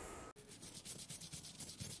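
Faint rubbing of a damp cloth rag wiping down raw pine boards, in quick, even strokes.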